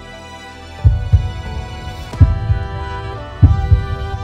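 Dramatic background music: sustained chords, joined about a second in by paired low thumps in a heartbeat rhythm, a pair roughly every second and a third.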